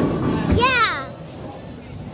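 A child's high-pitched wordless shout, about half a second long, its pitch rising and then falling, over the noisy background of a bowling alley.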